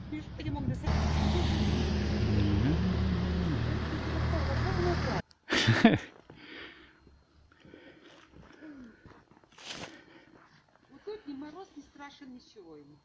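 A motor vehicle going by close on the road, engine and tyre noise loud and steady for about four seconds until it cuts off abruptly; after that only faint, scattered sounds.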